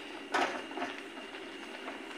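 A spatula stirring thick vegetable curry in a steel kadai: one soft scrape against the pan about a third of a second in, then a few faint ticks over a low steady hiss.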